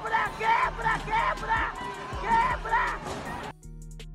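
People shouting in short repeated cries over a background music track. About three and a half seconds in the shouting cuts off suddenly, leaving only the music with a steady beat.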